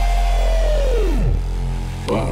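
Hardtek/tribecore electronic music in a break with the drums out: a held synth tone slides down in pitch about a second in, over a steady low bass.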